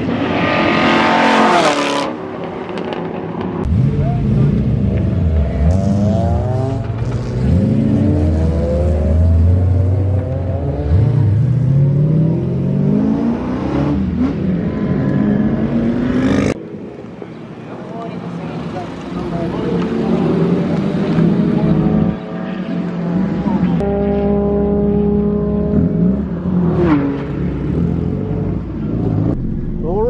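Several track-day cars on a racetrack accelerating and passing by: their engine notes climb in pitch through the gears and drop as each car goes past.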